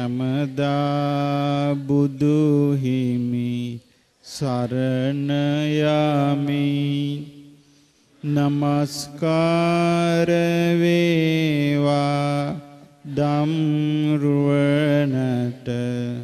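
Buddhist monk chanting in a slow, melodic male voice into a microphone, in four long drawn-out phrases with short pauses for breath.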